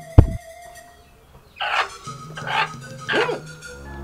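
One heavy, deep thump just after the start, then three short barks from a dog about two thirds of a second apart, over a steady background music score.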